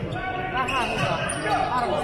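Basketball game in play in a large arena: the ball bouncing on the court amid game noise, with voices in the background.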